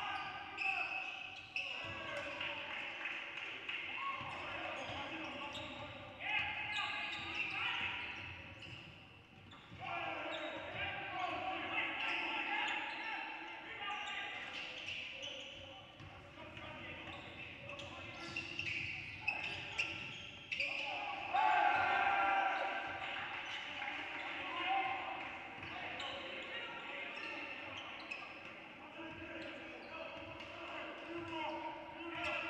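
Basketball being dribbled on a hardwood gym floor during live play, with players calling out to each other, all echoing in a large gym.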